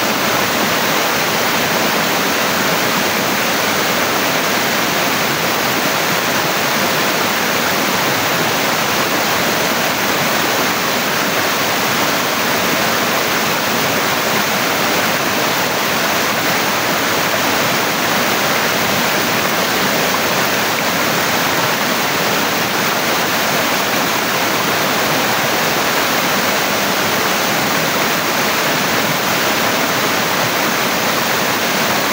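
Waterfall pouring and splashing down a rock face: a loud, steady rush of falling water.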